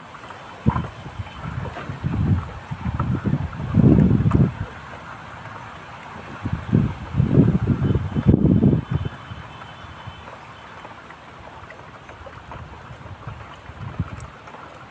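Wind buffeting the microphone in irregular gusts, strongest about four seconds in and again from about seven to nine seconds, then easing to a steady low rush.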